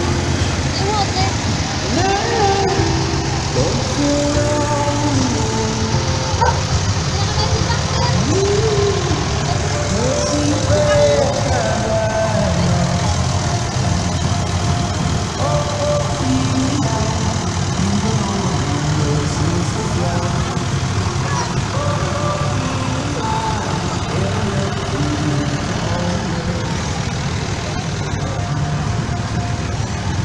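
Vintage tractor engine running slowly under load at walking pace, a steady low rumble, with a crowd chattering around it.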